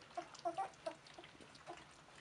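Young Border Collie puppies eating from a shared dish: short wet smacks and small grunts, busiest in the first second.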